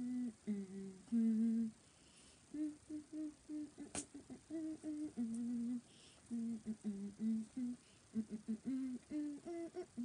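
A woman humming a pop-song melody as a run of short, steady notes, with one sharp click about four seconds in.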